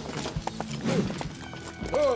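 Horses' hooves clip-clopping and a horse whinnying, over background music.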